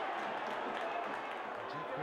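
Steady, even stadium crowd noise from a football match. A commentator's voice comes in near the end.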